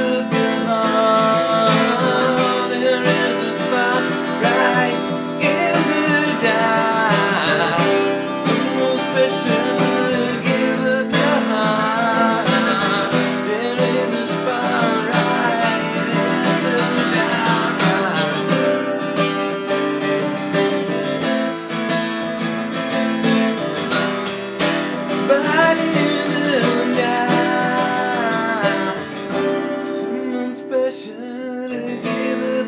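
Gibson Hummingbird acoustic guitar strummed steadily, accompanying a man singing a pop-rock song.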